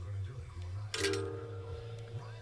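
One sharp metallic click about a second in, ringing briefly after, as the guitar's metal hardware is knocked during wiring. Under it runs a steady low hum.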